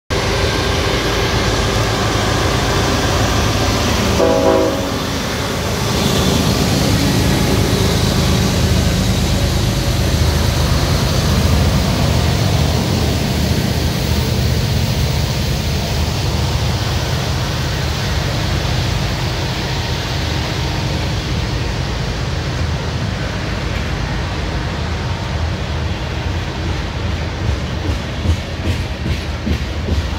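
CN diesel freight locomotive passing close by, giving a short horn note about four seconds in, its engine rumbling as it goes by. Then a long string of ethanol tank cars rolls past with steady rail noise, and near the end there are regular wheel clicks over rail joints.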